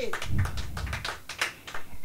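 Scattered, irregular handclaps, a few people clapping quietly at about four or five claps a second, with a faint voice trailing off at the very start.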